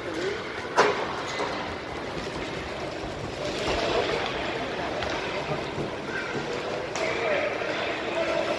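Ice rink ambience during a youth hockey game: distant voices of players and spectators over a steady hiss, with a sharp knock about a second in and another near the end.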